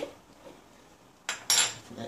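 A metal teaspoon clinks twice against a metal saucepan, two sharp knocks with a short ring, about a second and a half in.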